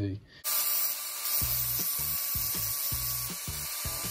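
Hitachi angle grinder with a cut-off disc grinding the turbo wastegate lever: a steady hiss with a faint whine, starting about half a second in. Background music with a beat comes in under it about a second and a half in.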